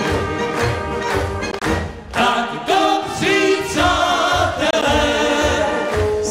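Czech brass band (dechovka) playing live while several voices sing the melody with vibrato over a steady bass beat.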